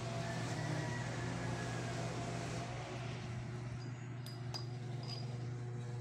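Steady low hum and hiss of room noise, the hiss easing about halfway through, with three light clicks near the end.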